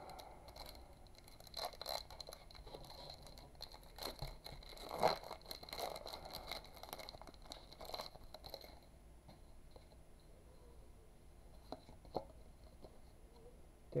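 A foil booster-pack wrapper being torn open and crinkled by hand, with the loudest rip about five seconds in. After about nine seconds it goes quieter, with a few faint clicks as the trading cards are handled.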